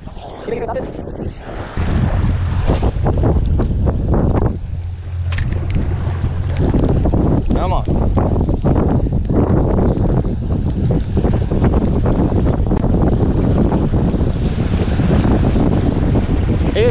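Wind gusting on the microphone, a heavy low rumble that sets in about two seconds in, over waves washing against the jetty's rocks.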